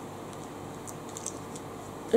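Steady low room hum with a few faint, short clicks in the middle, in a pause between spoken sentences.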